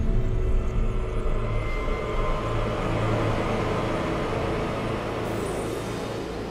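Cinematic logo-reveal sound effect: a deep, steady rumble layered with music, slowly dying away toward the end.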